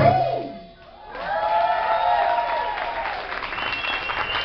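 A song ends on a last sung note, then the audience applauds from about a second in. A voice holds one long note over the clapping.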